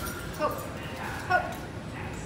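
A dog gives two short barks, about half a second and a second and a half in, over a low murmur of voices.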